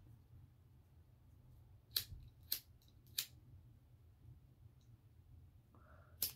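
Three short, crisp snaps of tarot cards being handled, about half a second apart, over a faint low hum.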